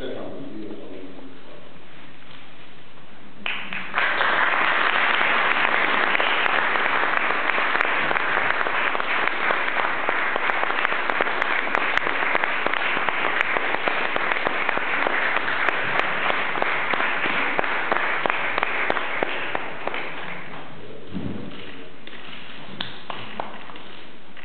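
An audience clapping: the applause breaks out suddenly about four seconds in, stays full and even for some fifteen seconds, then dies away.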